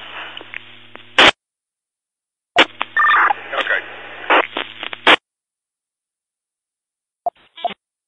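Two-way radio traffic on a scanner: a transmission with a steady hum ends with a squelch burst about a second in, and after a silent gap a second short keyed transmission with hum and no clear words ends in another squelch burst. Near the end there are two brief clicks of the channel opening.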